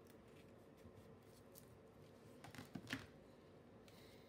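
Faint rustling and light taps of fingers pressing a sticker down onto a paper planner page, with a small cluster of clicks about three seconds in.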